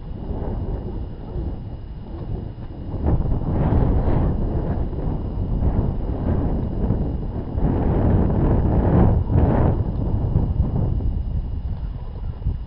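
Wind buffeting the camera microphone: a rough, uneven rumble that grows louder about three seconds in.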